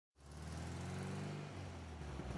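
Faint, steady low hum of a van's engine running, heard from inside the vehicle. It fades in just after the start.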